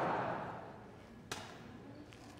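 Low murmur in a large hall fading away, then a single sharp knock about a second in.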